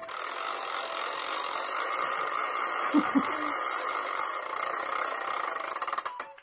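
BeanBoozled spinner app's spin sound effect played through a phone speaker: a steady, even rattling whir that cuts off suddenly after about six seconds as the wheel lands on a flavour.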